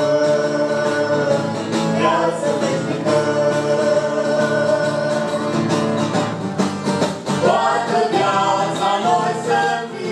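A family vocal group singing a Romanian gospel hymn, several voices together over instrumental accompaniment.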